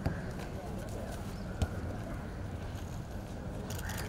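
Distant voices of children playing outdoors over a steady low rumble, with two sharp thumps, one just after the start and one about a second and a half in, typical of a football being kicked on grass.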